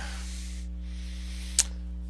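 Steady low electrical hum on the recording, with a soft hiss that fades within the first second and a single sharp click about one and a half seconds in.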